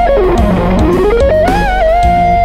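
Electric guitar fusion solo on an Ibanez JEM over a backing track of drums and bass. A fast picked run falls and climbs back up, then settles on a held note with a slight vibrato near the end.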